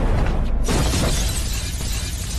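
A car windscreen smashing as a body is slammed onto it: a sudden crash of breaking glass a little over half a second in, over the background music of the film score.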